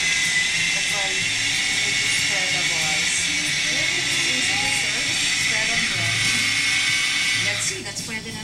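Small electric food processor running steadily, with a whine over its motor noise, as it whips grated queso de bola with butter and cream into a spread. It cuts off near the end.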